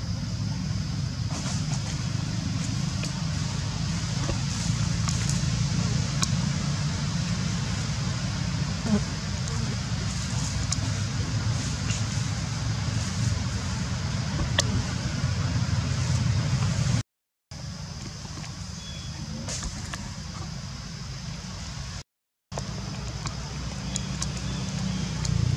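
Steady outdoor background noise: a low rumble with a thin, steady high-pitched hum over it and a few faint clicks. The sound cuts out abruptly twice for about half a second, once after about 17 seconds and once after about 22.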